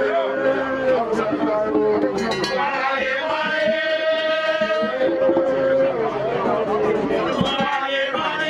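A group of voices singing a Vodou ceremonial song among crowd chatter, with a long held note through the middle.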